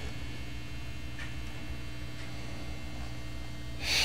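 Steady mains hum from a Fender Blues Junior tube amp with a Stratocaster's single-coil pickups plugged in, the strings not being played. A couple of faint ticks come in the middle, and a short burst of noise comes right at the end.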